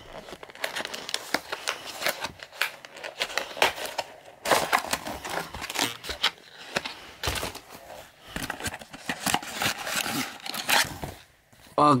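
Cardboard box and plastic packaging being opened by hand: irregular crinkling, rustling and tearing that goes on for about eleven seconds.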